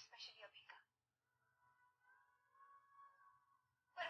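Near silence: a faint snatch of speech right at the start, then a faint drawn-out voice sound in the middle.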